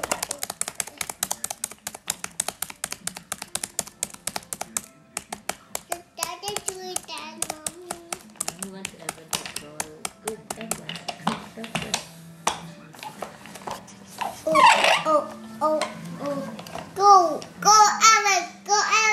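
Toy bus clicking rapidly and steadily, several clicks a second, for about twelve seconds before stopping, then a young child's voice calling out near the end.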